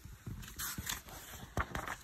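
A picture book's page being turned by hand: paper rustling, with a couple of short taps near the end.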